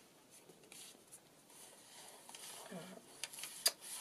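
Faint rustling and brushing of paper pages and tags being handled and turned in a handmade journal, with a few sharp clicks near the end.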